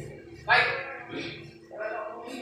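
A person's short, sharp shout about half a second in, followed by two briefer, fainter vocal sounds.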